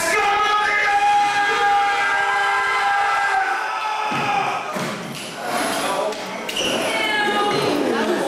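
A long drawn-out shout held on one pitch for about three and a half seconds, then rougher shouting and a second shorter, wavering yell near the end.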